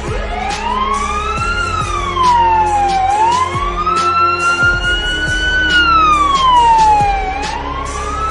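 Police siren starting up and wailing, its pitch rising and falling in slow sweeps a few seconds long, over background music with a steady beat.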